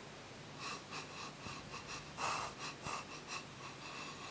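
A man sniffing a glass of ale with his nose in the glass: a run of short, quick sniffs starting about half a second in, faint.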